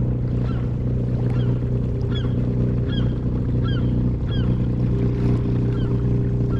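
Sea lions barking repeatedly: short, hooked calls about twice a second, over a steady low mechanical drone.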